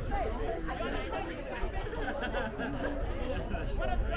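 Chatter of several people talking at once, their voices overlapping, with a steady low rumble underneath.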